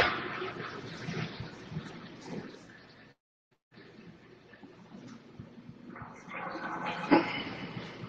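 Low room noise in a meeting room with a few small clicks and knocks, fading down until the sound cuts out completely for about half a second near the middle, then building back up.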